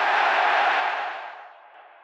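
Intro sound effect: a loud, even rushing noise that holds for about a second, then fades away.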